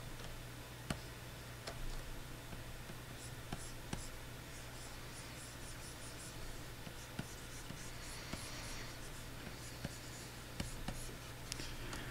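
Faint scratching of a stylus nib on a Wacom Cintiq 22HD pen display in many quick, short sketching strokes, with a few light clicks, over a steady low hum.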